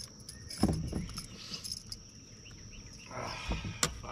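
Insects droning steadily at one high pitch, with a heavy thump about half a second in and a short rush of noise and a sharp click near the end, while a bass is being landed.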